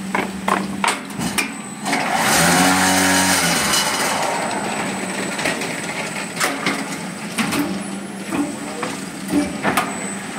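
A fly ash brick making machine running with a steady hum, while its pallet stacker gives scattered metal knocks and clanks. About two seconds in, a loud, hissing, buzzing burst lasts about two seconds and then fades.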